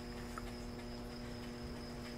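Faint night ambience: a steady high cricket chirp over a low, even hum.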